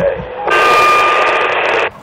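CB radio base station receiving a keyed transmission: a steady burst of static hiss with a faint whistle running through it starts suddenly about half a second in and cuts off sharply just before the end, after the tail of a voice over the radio.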